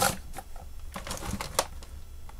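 Fine metal tweezers clicking and tapping against a tiny metal pin on a wooden workbench: a few separate sharp clicks, the loudest about one and a half seconds in, over a faint low hum.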